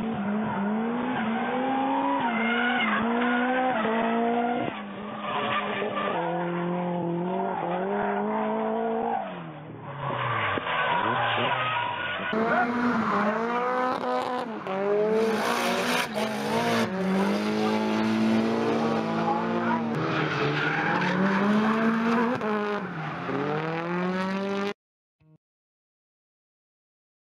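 Nissan 180SX drift car's 2.0-litre turbo four-cylinder engine revving hard, its pitch climbing and dropping every second or two through the drift, with tyres squealing. The sound changes abruptly about halfway through to a brighter, clearer recording, and it cuts off suddenly near the end.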